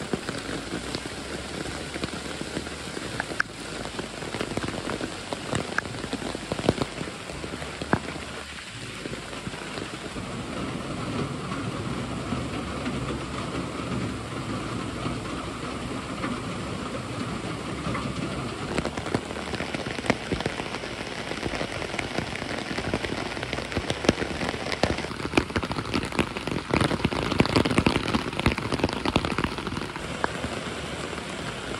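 Steady rain, with many sharp hits of single drops close by, a little heavier in the last few seconds.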